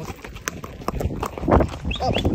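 Horse's hooves clopping on a gravel dirt track in an uneven series of knocks as the ridden horse moves along, with a brief human voice about one and a half seconds in.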